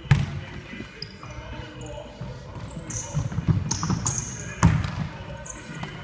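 Basketball bouncing on a hardwood gym floor, with two loud bounces, one just after the start and one near five seconds in, and short high squeaks of sneakers on the floor in between.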